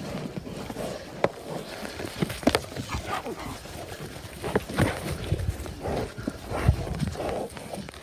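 Two yaks fighting: a series of sharp knocks as their horns clash, among heavier thuds of bodies and hooves on turf.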